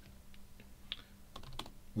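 A handful of faint, irregularly spaced keystrokes on a computer keyboard as code is typed.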